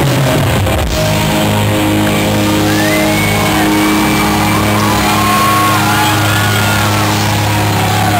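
Live punk band with amplified electric guitars and bass holding a long ringing chord as the drums stop, the close of a song, with yells gliding over it from about the third second.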